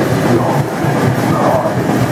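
Live death-thrash metal band playing loud and continuous: heavily distorted electric guitar riffing over fast drumming.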